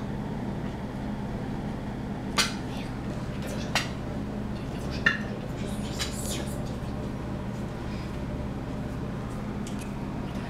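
A steady low hum, broken a few seconds in by three sharp clinks of tableware about a second apart, with a couple of fainter ticks after them.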